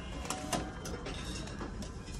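Restaurant meal-ticket vending machine printing and dispensing a ticket, with a few sharp clicks over a steady background hum.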